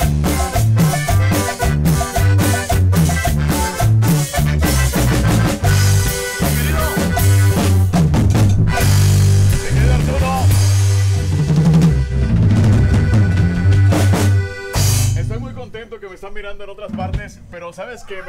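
A live regional Mexican band with guitars and a drum kit playing a song, with a steady bass line. The music stops about fifteen seconds in, and a man's voice follows more quietly.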